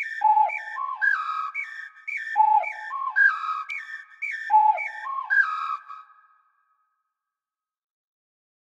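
Whistled melody sample: a short phrase of scooping notes that starts on a low note and climbs, played three times about two seconds apart. It stops about six seconds in.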